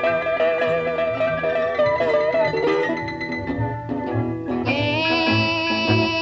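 Early-1950s Chicago blues record: an instrumental stretch of electric guitar playing long notes that waver and bend, over a steady rhythm-section beat. A brighter, fuller held note comes in about two-thirds of the way through.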